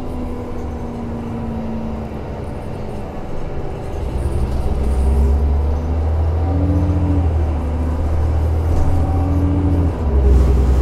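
City bus heard from inside the passenger cabin while driving, its engine and drivetrain making a steady low drone. About four seconds in the drone grows louder, and a brief whine comes and goes twice.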